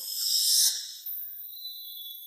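A whoosh sound effect at a scene transition: a high, airy hiss swells for about half a second and then drops away, leaving a fainter hiss.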